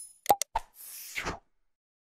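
Animation sound effects: two quick mouse clicks with a short pop, then a swoosh that slides downward about a second in.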